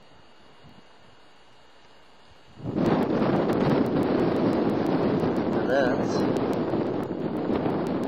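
Quiet at first, then wind rushing over the camcorder microphone sets in suddenly about three seconds in and carries on loud and steady.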